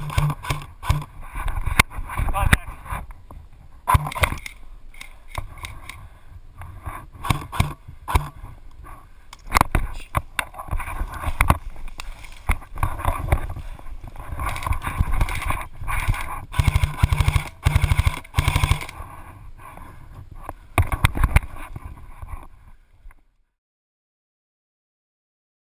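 Bursts of airsoft gunfire, rapid clicking strings, mixed with rustling and knocks from pushing through tall grass and with shouted voices. The sound cuts off abruptly near the end.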